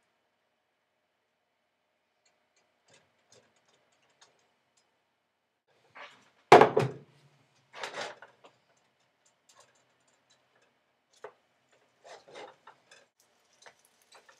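Kitchen utensils and a skillet being handled on a stovetop: scattered light clicks and taps, a single loud knock about six and a half seconds in, a rougher clatter a second later, and a few more small clicks near the end.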